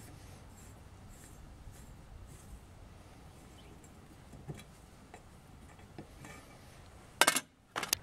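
Faint scraping and a few light ticks of a hand tap being turned by a T-handle tap wrench in a bolt hole in a cast-iron exhaust manifold, chasing the threads after a broken bolt was removed. A short burst of sharp metallic clicks comes near the end.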